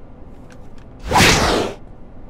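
A single loud whoosh about a second in, lasting under a second: a swish sound effect of the kind dubbed over a quick movement or scene cut.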